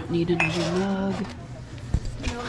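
Ceramic mugs clinking against each other on a shelf as a mug is set back down, one bright ringing clink near the start and a knock near the end. A person hums briefly through the first second.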